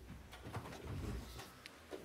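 Faint low room rumble with a few soft rustles and light knocks of movement at the table.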